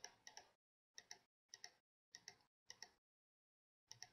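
Faint computer mouse clicks, about seven in all and spaced irregularly, each a quick press-and-release double tick, as a list item is stepped up one place at a time.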